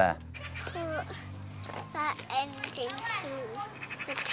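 Young children's voices calling out answers, high-pitched and speaking in turn.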